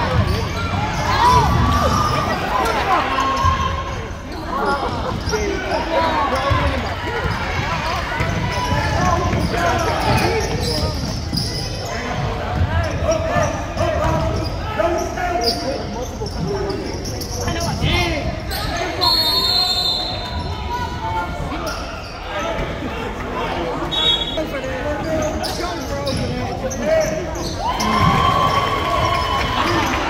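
A basketball bouncing on a hardwood gym court during play, mixed with players' and spectators' indistinct voices and calls, echoing in the large hall.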